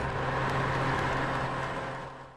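A vehicle driving past: steady road noise with a low hum, fading away near the end.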